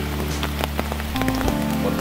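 Background music of long held notes that move to new notes about a second in, over a steady patter of small clicks.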